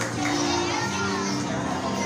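Music with held notes changing every half second or so, under the chatter of a crowd of children and adults.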